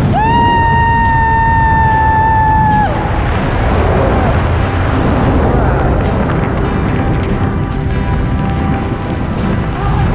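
A woman's long, high held "whoo" under a tandem parachute, lasting about three seconds and sliding down in pitch as it ends. Steady wind rush on the helmet camera's microphone runs throughout.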